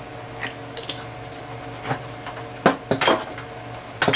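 Light clinks and knocks of a small glass bottle and a ceramic mug being handled, several short taps spread through, the loudest two near the end, over a steady low hum.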